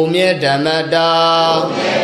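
Male voice chanting a Buddhist recitation in a drawn-out melody. The pitch slides at first, then settles into held notes about a second in.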